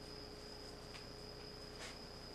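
Quiet room tone: a steady high-pitched whine over a low hum, with a faint click about a second in and a brief soft rustle near the end.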